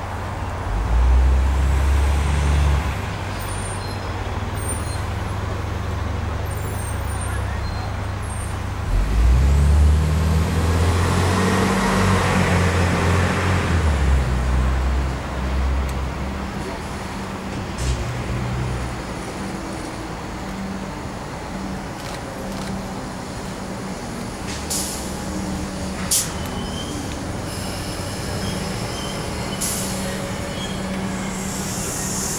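Comeng electric suburban train approaching and drawing into the platform, with a steady low hum and a few sharp clicks in the second half. Earlier, a heavy deep rumble swells twice, loudest around the middle.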